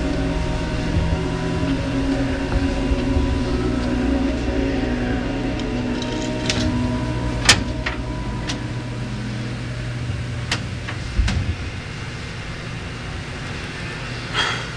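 A steady low hum made of several held tones, with a few sharp clicks and knocks scattered through; the loudest click comes about halfway.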